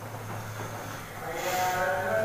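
Steady low electrical hum under quiet room tone. About one and a half seconds in, a man's voice begins a long-held, wavering chanted note: the opening of a Quranic recitation.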